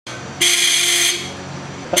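Euroblast 142 dB electric semi-air horn on a motorcycle giving one loud blast of a single steady pitch about half a second in, lasting under a second. A short laugh follows at the end.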